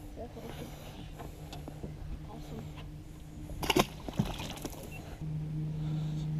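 Largemouth bass released over the side of a boat: a short splash as it drops into the water just under four seconds in, over a low steady hum that grows louder near the end.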